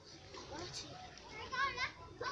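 A child's voice making brief wordless, high-pitched, wavering cries, the loudest one about a second and a half in, with fainter voice sounds before it.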